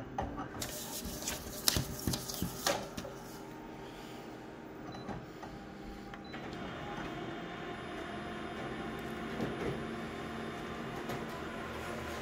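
Paper rustling and a few knocks as a sheet is handled on a copier's glass, then from about six seconds in a Konica Minolta colour copier runs with a steady whirr as it prints the copy.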